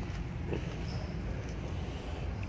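Steady low background rumble and hum, room tone with no distinct events.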